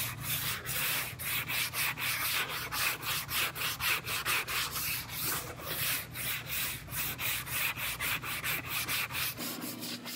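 Sandpaper on a long hand sanding block scraping back and forth over cured body filler on a car's quarter panel, in quick, even strokes about three a second. The filler is being block-sanded to shape.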